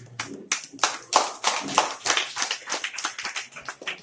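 A small group of people clapping their hands in a room, the claps quick and uneven.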